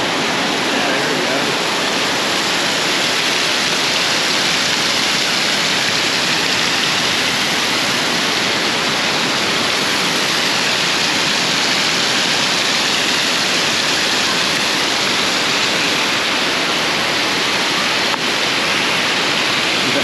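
Heavy tropical downpour, rain pouring down steadily as an even, dense hiss with no letup.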